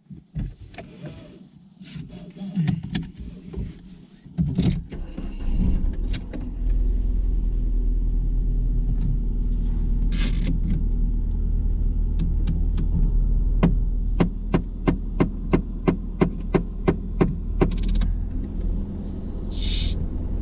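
Car engine idling, heard from inside the cabin: a steady low rumble that sets in about five seconds in, after a few scattered knocks. Near the end comes a quick run of sharp clicks, about three a second, then a short hiss-like burst.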